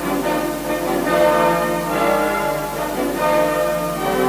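Symphony orchestra playing a loud, dense passage, many sustained notes sounding together, swelling about a second in and again near the end.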